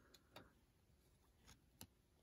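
Near silence, with a few faint clicks and taps of glossy trading cards being shuffled in the hands.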